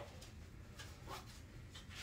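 Faint rubbing and a few light knocks as a fiberboard divider panel is slid down into a fabric-covered folding storage ottoman, over a low steady hum.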